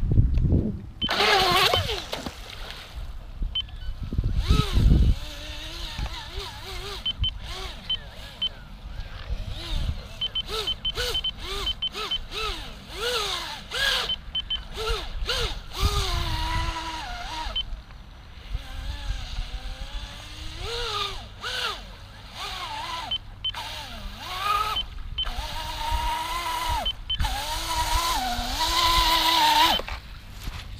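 Motor of a small radio-controlled catamaran speed boat running across the water, its whine rising and falling in pitch as the throttle is worked through turns. Wind gusts on the microphone, and the sound briefly cuts out many times.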